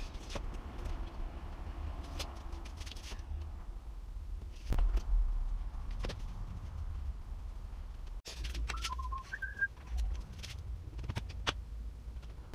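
Handling noise as an aluminium track-saw rail is set on a sheet of plywood and clamped: scattered light knocks and taps, with one heavier thump a little under five seconds in, over a low hum. A couple of short whistle-like chirps, stepping up in pitch, come about nine seconds in.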